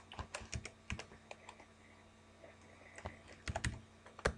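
Keystrokes on a computer keyboard: a run of quick taps in the first second, a lull, then another short burst of taps near the end.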